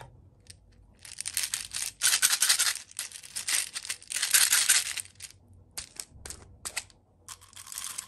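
Small plastic beads rattling inside a little plastic bottle as it is shaken, in dense bursts for about four seconds. A few separate clicks and one more short rattle follow near the end.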